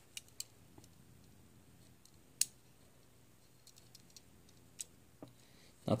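A few faint, sharp clicks from a diecast model car being handled, with one louder click about two and a half seconds in. This is its small opening hood being worked and pressed shut, a hood that does not close flush.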